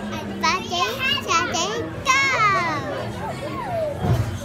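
A young child's high-pitched voice making a quick run of short squeals and sing-song sounds, ending about two seconds in with a longer falling squeal, followed by a few softer gliding calls.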